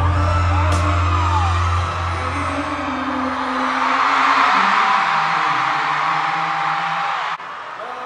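Live pop concert in an arena: a male singer's voice over the band track with heavy bass, the bass dropping out about three and a half seconds in as the crowd's screaming swells. The sound drops abruptly near the end.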